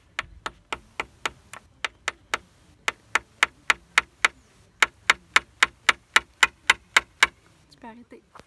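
Claw hammer driving small nails into a wooden strip to make the nail pegs of a tri loom frame. Quick sharp taps come about four a second in three runs with short pauses, and the last run is the loudest.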